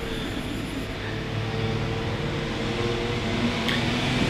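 Steady low hum of a running machine in the room, with a faint even hiss and no distinct events.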